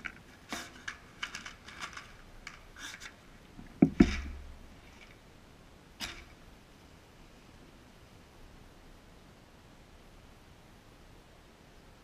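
Matches scraped against the striker of a matchbox: a run of short scratches in the first three seconds, a loud thump about four seconds in, and one more scrape at six seconds. The matches are struggling to light.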